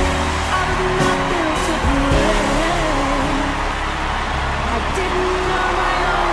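Music playing over an audience cheering and applauding.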